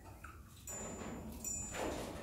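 Faint, thin, high-pitched calls of birds in the background: a few short steady whistles over a soft hiss.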